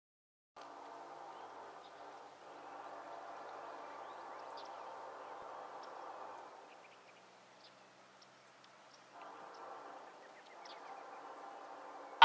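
Faint, distant Nathan K5LA air horn on Norfolk Southern locomotive 1084, sounding long blasts as the train approaches. The horn chord holds steady for several seconds, pauses for about two seconds, and comes in again about nine seconds in. Birds chirp faintly over it.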